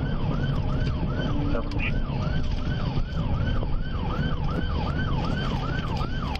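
Police car's electronic siren in yelp mode: a fast repeating wail, each cycle rising sharply and sliding back down, about three cycles a second. Under it is the engine and tyre noise of the patrol car driving at speed.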